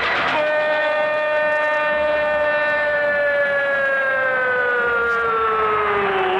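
A radio football commentator's prolonged goal cry: one long shouted note held for about six seconds, its pitch sagging slowly as it goes.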